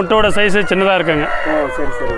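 A rooster crows once, a long call that begins about a second in and trails off with a falling pitch near the end, over a man talking.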